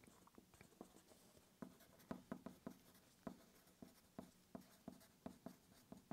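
Yellow wooden pencil writing on a sheet of paper on a wooden table: quiet, short scratches and taps of the lead as each letter is formed, several a second.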